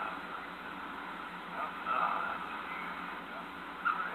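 Brief, indistinct voice sounds, once about two seconds in and again near the end, over a steady hiss.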